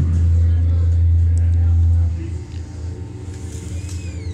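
Live rock band holding a loud, deep bass note between sung lines; about two seconds in it drops away to quieter sustained tones.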